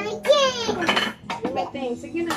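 Small makeup items clinking and clattering as a toddler handles them on a wooden dresser top, with short bits of the child's high voice.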